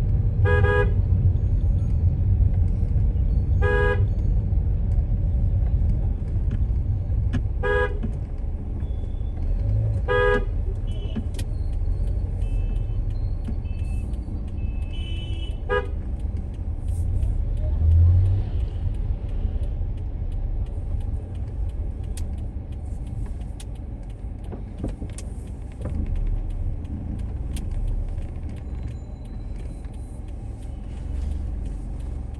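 Steady low rumble of a car driving slowly, heard from inside the cabin. A car horn gives five short toots over the first sixteen seconds.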